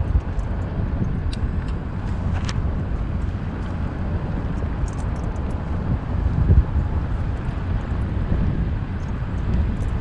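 Car driving slowly on a paved road: a steady low rumble of engine and tyres, with scattered faint light clicks and one brief louder bump about six and a half seconds in.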